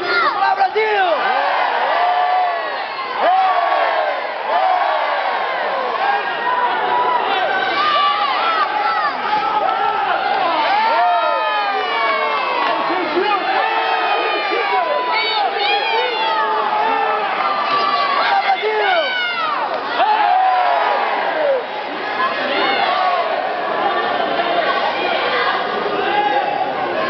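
Sports-hall crowd shouting and cheering without a break, many voices overlapping, with individual calls rising and falling in pitch.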